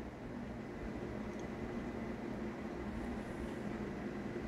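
Steady low machine hum with a faint hiss, unchanging throughout: room tone.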